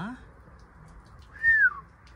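A single clear whistled bird call about one and a half seconds in, sliding down in pitch.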